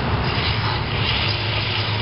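Electric drill running a 2-3/8-inch hole saw that is cutting into a boat's fiberglass hull: a steady motor drone with the rasp of the saw teeth in the fiberglass.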